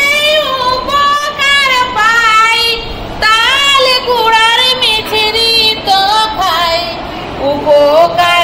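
A woman singing a Patua scroll song (pater gaan) unaccompanied, the song that goes with the painted patachitra scroll as it is unrolled. Her phrases are long, held and wavering, with short breaks for breath.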